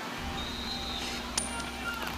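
A flipped coin landing on a hard tennis court: a single sharp clink about one and a half seconds in, ringing briefly.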